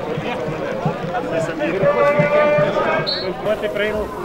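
Spectators and players talking and calling out at the side of an amateur football pitch, several voices overlapping, with one long drawn-out call about halfway through.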